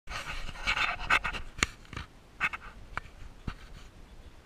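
Handling noise from an action camera being set up by hand: rubbing and rustling close to the microphone, then a few sharp clicks, the loudest about a second and a half in.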